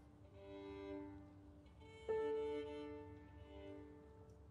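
Violin being tuned: open strings bowed together in long strokes, two steady pitches at once. About halfway through, a single piano note is struck and left to ring.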